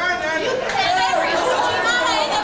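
Indistinct speech: voices talking over one another, with no words made out.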